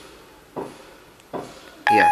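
Clicks as an iPhone's volume is stepped up with the side button, about one every 0.8 s, then near the end a short, loud electronic beep: Siri's listening tone.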